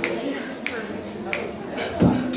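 Finger snaps keeping an even beat, three in all, about two-thirds of a second apart, counting off the tempo just before an a cappella group starts singing.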